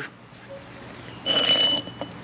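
Steel motorcycle compensator sprocket picked up from concrete, a short scrape with a brief metallic ring a little past a second in.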